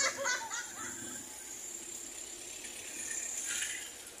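Brief low voices in the first second, then a vehicle driving past close by, its noise swelling and fading near the end.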